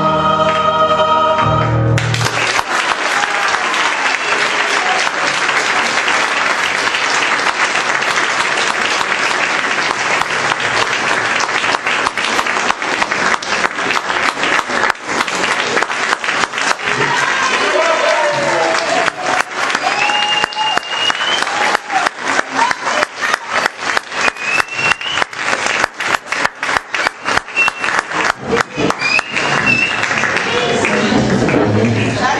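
A mixed amateur choir holds its final chord, which ends about two seconds in. Audience applause follows, loud and sustained. In the second half the applause turns into rhythmic clapping in unison, about two to three claps a second, with a few cheers.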